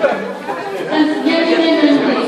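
A woman speaking into a microphone over a PA system, with guests chattering behind.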